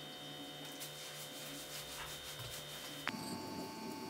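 Faint steady electrical hum with a light, even pulse in it. About three seconds in, a click marks an abrupt change to a different faint background with a few small ticks.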